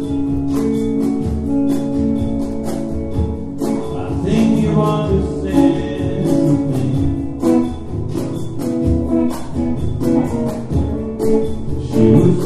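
Live band music: an electric guitar playing over hand drums and other percussion, with steady rhythmic strikes throughout.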